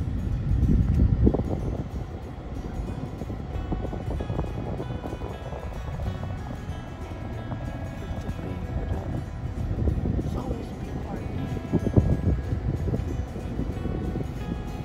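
Car road noise heard from inside the cabin, a steady low rumble with a couple of louder swells, and music playing over it that becomes clearer from about a quarter of the way in.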